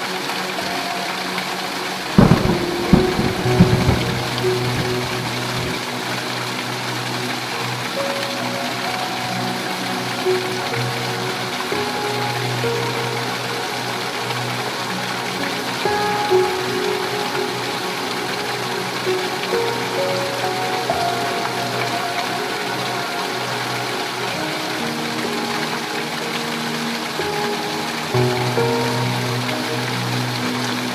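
Heavy rain pouring steadily, with a crack of thunder about two seconds in that rumbles on for a couple of seconds. Soft music of long held notes plays beneath the rain.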